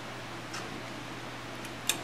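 Two light metal clicks, a faint one about half a second in and a sharper one near the end, as the small primer valve is set down into its bore in the cast Powerglide pump body, over a steady low hum.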